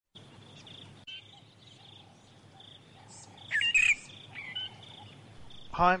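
Outdoor nature sound of birds calling over a steady, pulsing high insect trill, with a short call about a second in and two loud chirping calls about three and a half seconds in.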